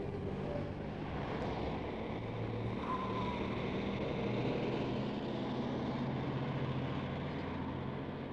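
Steady low rumble of vehicle engines and traffic, with a short high chirp about three seconds in.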